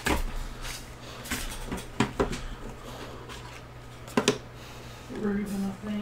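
Cardboard trading-card box being handled and opened: a few sharp taps and scrapes, loudest at the start, about two seconds in and just after four seconds.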